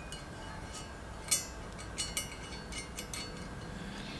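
Light metallic clicks and clinks, about six in all, the loudest a little over a second in, as a metal EGT probe is slid down into its compression fitting on an exhaust manifold.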